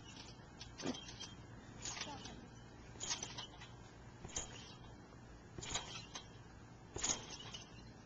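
Trampoline springs and mat under someone bouncing high: a short creak or squeak-thump in a steady rhythm, about one every 1.3 seconds, six in all.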